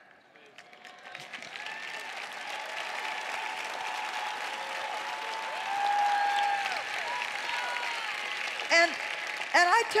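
Large audience applauding, building over the first couple of seconds and holding, with some voices cheering over the clapping.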